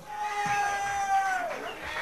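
A man's voice holding one long, steady, high call into a microphone, which slides down in pitch about a second and a half in.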